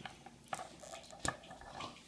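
Faint handling of a small plastic action figure and its accessories: soft clicks and rustles, with two sharper ticks about half a second and a second and a quarter in.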